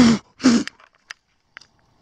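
Two short puffs of breath blown close to the microphone, about half a second apart, onto a jelly mushroom (Auricularia auricula) to make it release its spores, followed by a couple of faint clicks.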